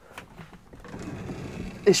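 Manual drop-down bed of a Bailey Autograph 79-6 being pulled down, its mechanism sliding with a low mechanical noise that builds about halfway in.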